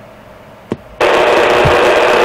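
CB radio receiver: a single click, then about a second in a sudden, loud, steady burst of static hiss as another station keys up its transmitter.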